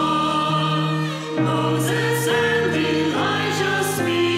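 Choir singing the offertory hymn during the preparation of the gifts, in long held notes that change about once a second.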